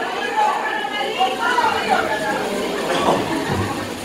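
Indistinct talking, several voices at once, with audience chatter; no music is playing.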